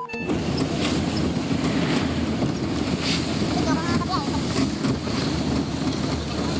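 Road and wind noise inside a moving vehicle with its window open: a steady low rumble under a rushing hiss, with a few faint chirps near the middle. A short electronic tone cuts off just before it begins.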